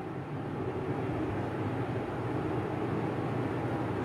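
Steady background room noise with a faint low hum, even throughout.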